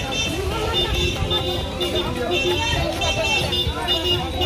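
Busy street hubbub on a crowded road: many overlapping voices mixed with vehicle noise, at a steady level.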